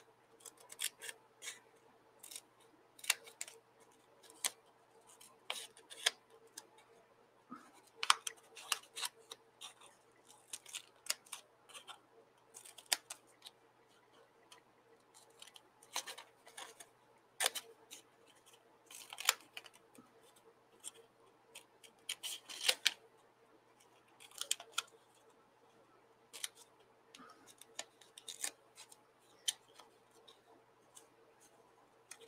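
Scissors snipping through painted paper: a long run of short, irregular snips, some coming in quick clusters.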